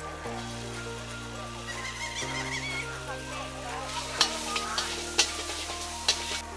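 Noodles sizzling as they are stir-fried in a wok over a gas burner, with a metal spatula scraping and tossing them. It strikes the wok with sharp clanks about four and five seconds in.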